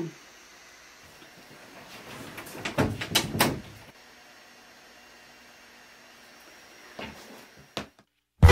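A room door being shut: a cluster of knocks and clicks about three seconds in, then a couple of small knocks near the end, over quiet room tone.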